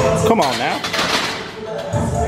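A loaded barbell is racked onto the bench press uprights, and the bar and iron plates clank against the metal hooks about a second in. A short grunt from the lifter comes just before, over background music with steady tones.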